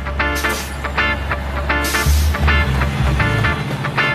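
Cartoon bus pulling away: a low engine rumble that swells about two seconds in, with a short burst of hiss, and dies out before the end, under background music with a quick, evenly repeated note pattern.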